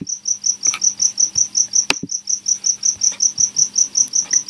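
An insect chirping in a fast, even, high-pitched pulse, about six chirps a second. Two sharp clicks, one at the start and one about two seconds in.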